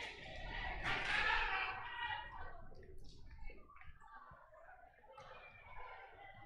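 Gymnasium ambience at a volleyball match: a low murmur of crowd voices in a large hall, with a faint thud about four seconds in.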